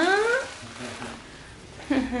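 A woman's voice rising in pitch in a drawn-out exclamation that trails off within the first half-second, followed by a faint, steady hiss of room noise.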